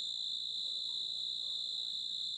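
Night chorus of crickets: a steady, high-pitched trill that holds without a break.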